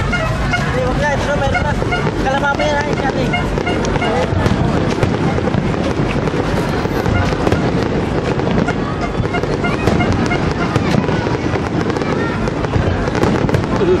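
An aerial fireworks display bursting without a break: many overlapping bangs and crackles, with crowd voices chattering underneath, most clearly in the first few seconds.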